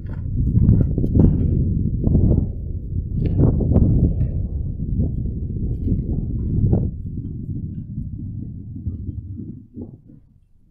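Wind buffeting a handheld camera's microphone, a dense low rumble, with hikers' footsteps on a dirt and gravel track. It dies away just before the end.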